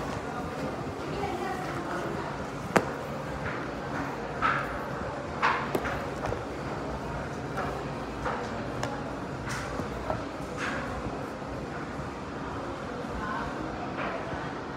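Indistinct background voices over a steady room hum, with a few scattered sharp clicks and knocks, the loudest about three seconds in.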